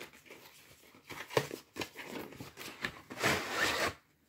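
A cardboard paint-by-number kit box being opened by hand: small taps and handling noises, then a rub of under a second near the end as the lid slides off the base.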